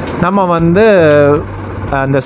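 Speech only: a person's voice holds one drawn-out syllable for about a second, over a steady low hum.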